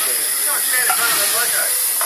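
Steady, high hiss of steam from the boiler fittings in the cab of a narrow-gauge steam locomotive, with faint voices under it.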